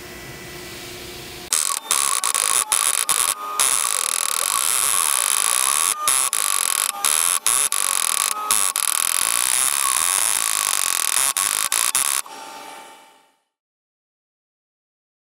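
A CNC engraving tool cutting a dotted star pattern into aluminium bar. It makes a loud, high-pitched whine starting about a second and a half in, broken by several brief pauses. It stops near the end and fades out.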